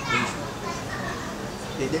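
People's voices: scattered speech, with children playing in the background.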